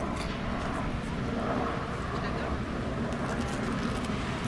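Steady low rumble of a river tour boat under way, with wind noise on the open deck and faint voices of other passengers in the background.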